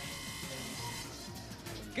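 Quiet background music, with a faint steady high tone that cuts off about halfway through.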